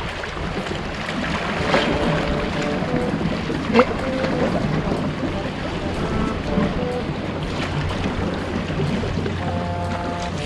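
Sea water sloshing and lapping among concrete tetrapod blocks, a steady wash of noise, with quiet background music of short held notes over it. There is one sharp click about four seconds in.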